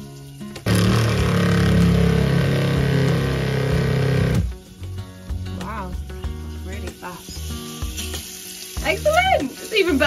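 A boat's freshwater pump switches on about a second in and runs steadily for about four seconds, then cuts off suddenly. This is the repaired pump coming on to pressurise the water system. Background music follows.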